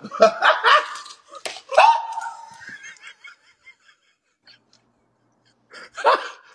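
A man laughing, fading out over about three seconds, with one sharp smack about a second and a half in.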